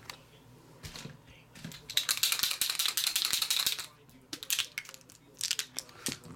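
A rapid rattle of small hard clicks lasting about two seconds, starting about two seconds in, with a few single clicks before and after.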